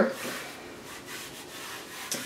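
Hands rubbing a sheet of printable rice paper over a gel press plate to transfer the paint: a soft, steady rubbing.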